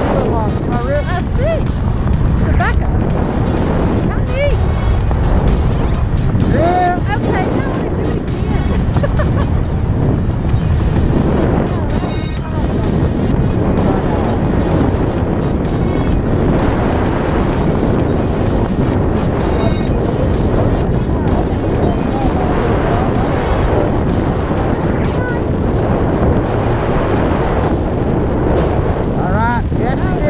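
Wind buffeting the camera microphone during a descent under an open parachute: a loud, steady rushing noise.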